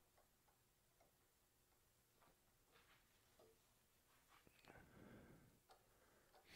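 Near silence: room tone with a few faint small clicks and a brief soft rustle near the end.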